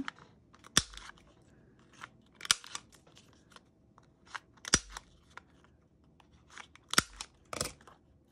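Handheld corner rounder punch snapping through a paper card as its corners are rounded: sharp clicks about every two seconds, with faint paper rustling between.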